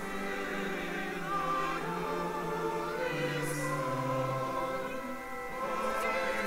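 Church congregation singing a hymn together, in slow, held notes that change about every second or so.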